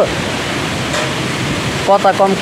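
Steady rushing noise of a rainstorm with wind, an even roar with no break.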